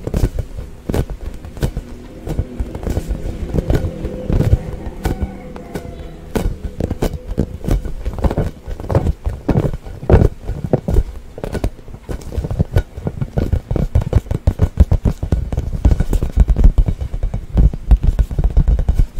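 Fingers and fingernails tapping and drumming on an inflated rubber toy ball held against the microphone: a dense, uneven run of hollow taps and deep thumps. From about three to six seconds in, the taps are joined by a pitched squeak of skin rubbing on the ball.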